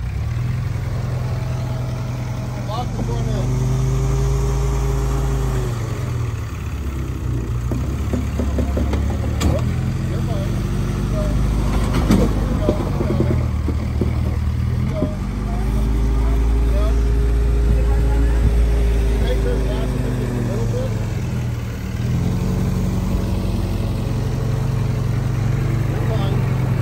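A Willys MB's L134 four-cylinder engine crawls over rock in super-low gearing. It twice pulls up to higher revs under load for a few seconds at a time and settles back in between. A few sharp knocks come around the middle.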